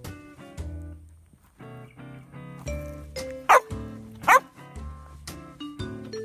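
A dog barks twice, under a second apart, loud over upbeat jazz background music that plays throughout.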